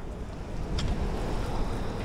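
Fresh water from a beach shower tap spraying over a sand-fouled spinning reel, with wind rumbling on the microphone and a couple of faint ticks of handling.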